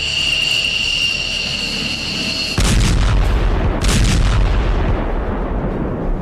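A steady high-pitched ringing tone for about two and a half seconds, cut off by a loud artillery-type blast. A deep rumble follows, with a second sharp blast about a second later.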